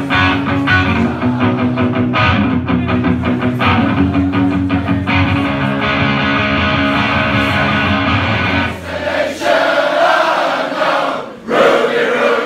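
Amplified electric guitar strummed hard in a live punk set, with a crowd singing along. About nine seconds in the guitar drops out and the crowd carries on alone, singing and shouting, with a loud burst of crowd noise near the end.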